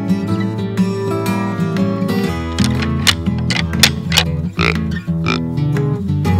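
Background music led by acoustic guitar, with sustained low notes and a run of sharp hits in the second half.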